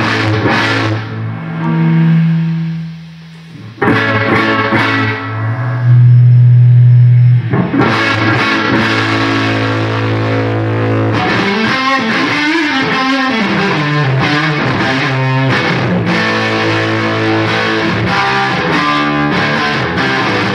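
Fender Stratocaster electric guitar played loud through fuzz, wah and Uni-Vibe-type pedals into a Marshall amplifier: held notes and chords that die away once, then strike again, with a loud sustained low note, then wavering phrases that bend up and down in pitch for several seconds.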